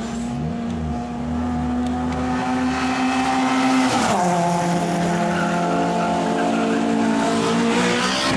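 Citroën hatchback hillclimb car's engine running hard at high revs as it approaches and passes close by, the pitch dropping sharply as it goes past about halfway through, then rising slowly as it pulls away.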